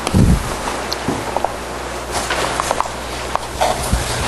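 Steady electrical hum and room noise in a lecture room, with one dull low thump just after the start and scattered light taps and clicks after it.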